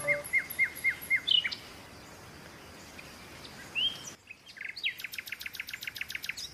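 Short chirps repeated evenly, about five a second for the first second and a half, then a few single chirps. From about five seconds in, mechanical alarm clocks ticking fast and evenly.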